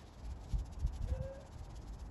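Faint, rapid rattle of organic fertiliser granules being shaken from a round tub onto a lawn, over a low steady rumble.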